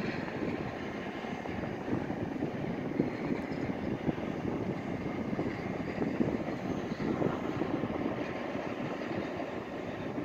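Distant Boeing 737 airliner's jet engines on landing, a steady rushing rumble with no sharp changes.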